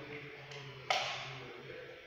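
A single sharp knock about a second in, over a faint low steady hum.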